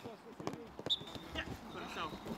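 Footballs being struck during a passing drill on a grass pitch: a few sharp knocks in the first second, with voices in the background.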